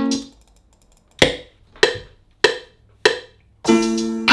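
A beat being made in FL Studio playing back: the melodic loop drops out just after the start, leaving four sharp drum hits a little over half a second apart, each dying away quickly, and the melodic loop comes back in near the end.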